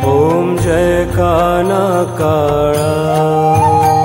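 Devotional Krishna aarti music between sung lines: an ornamented melody with bending pitches over a steady low accompaniment. A higher melodic line comes in about three seconds in.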